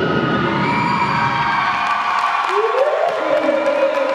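Dance-routine music played loud over a sports hall's sound system, with the audience cheering and whooping over it.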